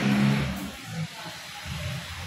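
A motor vehicle's engine hum that fades out about half a second in, leaving a faint low rumble.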